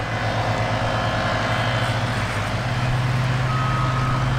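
A steady low engine hum that grows louder about two and a half seconds in, with a steady high beep starting near the end.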